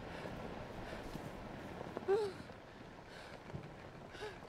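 A woman's breathing with one short, high whimper about two seconds in, over a steady background hiss.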